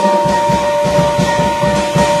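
Live free-jazz trio of acoustic piano, upright double bass and drum kit improvising. Two high notes are held steady while busy low activity comes in a moment in.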